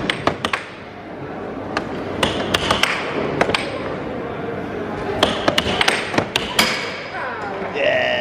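Air hockey game: the puck is struck by plastic mallets and clacks off the table's rails in sharp, irregular hits, some in quick runs, the busiest stretch from about five to seven seconds in, over a steady background of arcade noise.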